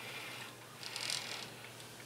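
Faint, brief rattle of a 3D printer's X-axis carriage being slid by hand along its steel guide rods, with the bearings and toothed belt running, about a second in.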